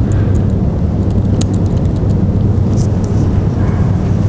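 A few scattered laptop keystrokes clicking over a steady low room rumble, as a line is typed into a document.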